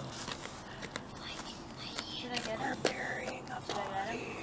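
A small hand tool digging and scraping into loose soil, with scattered sharp clicks and crunches as it bites into the dirt. Quiet whispered voices come in near the middle and the end.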